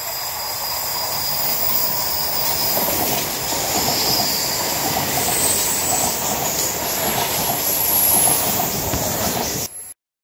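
Electric commuter train passing close by, the wheels on the rails building in loudness as it goes past, with thin high-pitched squeals from the wheels now and then. The sound cuts off abruptly near the end.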